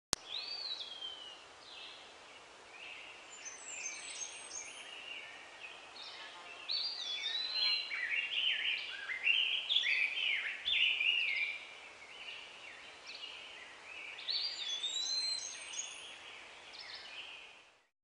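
Birds chirping and calling, many short high chirps and whistled notes overlapping, busiest in the middle and fading out just before the end.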